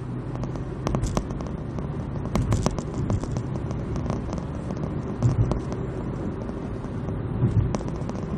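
Car driving at motorway speed, heard from inside the cabin: a steady low rumble of tyres and engine, with scattered small clicks and knocks.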